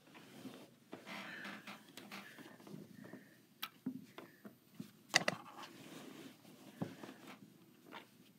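Quiet rustling of quilt and binding fabric being handled at a sewing machine, with a few small clicks and taps, the sharpest about five seconds in. The sewing machine is not running.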